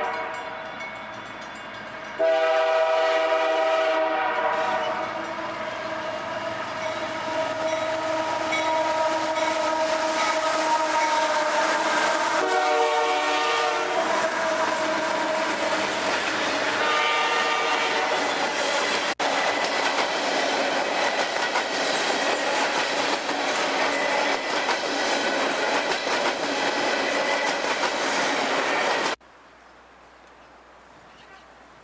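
Freight train's diesel locomotive sounding its multi-chime air horn in repeated long blasts as it approaches and passes. A train of tank cars then rolls by with steady wheel clatter, until the sound cuts off near the end.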